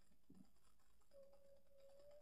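Near silence: room tone, with a faint steady high tone that starts about a second in.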